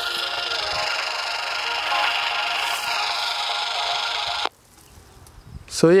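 Portable FM radio's speaker hissing with static, the weak signal from a homemade FM transmitter about 200 meters away faintly coming through the noise. The hiss cuts off suddenly about four and a half seconds in.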